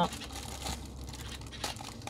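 Gold foil wrapper of a chocolate bar crinkling and tearing as it is peeled back by hand, a run of small irregular rustles and crackles.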